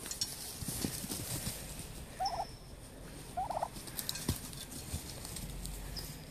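Domestic turkeys calling, two short calls about two and three and a half seconds in, over faint scattered clicks and scuffling.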